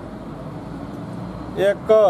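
Steady outdoor background noise, like traffic or street hum, runs through a pause in a man's speech. Two short spoken syllables come near the end.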